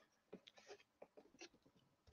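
Near silence, with faint scattered scratches and small taps from hands rummaging through the items inside a cardboard shipping box.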